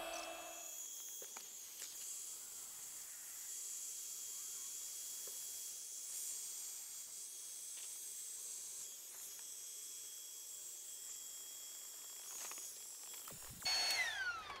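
Small rechargeable electric air pump inflating an air mattress: a steady, faint hiss of rushing air with a thin high whine under it.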